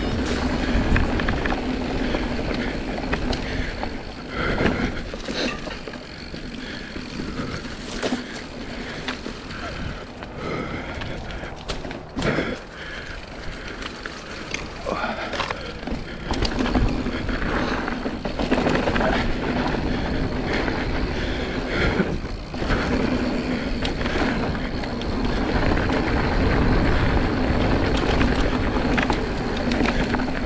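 Mountain bike riding a dirt trail: tyre noise on the ground, with the bike's knocks and rattles over bumps throughout.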